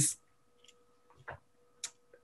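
A pause in speech on a video-call line: the end of a word cuts off at the start, then near-quiet with a faint steady tone and three soft, short clicks spread through the pause.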